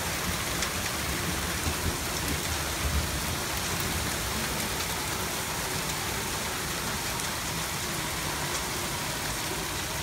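Heavy thunderstorm rain pouring down in a steady, dense hiss, with a few brief low bumps in the first three seconds.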